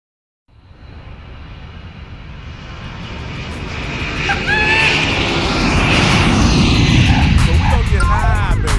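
Jet airliner engine noise swelling steadily louder for several seconds, as if the plane is approaching or taking off, with brief snatches of voice around the middle. It is a recorded sound effect opening a hip-hop track about airport stress.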